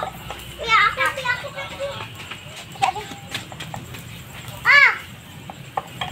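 Children's high-pitched voices calling out in short bursts, once about a second in and again near the end, with scattered light clicks and knocks between.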